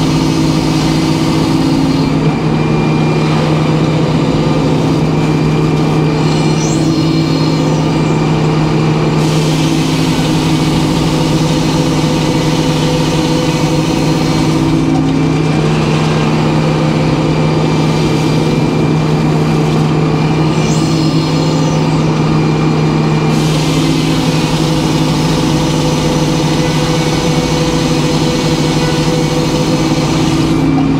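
Large circular sawmill blade cutting a white pine log, over the steady hum of the mill's power unit. The high hiss of the cut stops twice for several seconds, leaving only the blade and motor running, then comes back.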